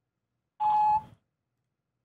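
Voicemail beep over the phone line: one short steady tone about half a second in, signalling that the recording of a message has started.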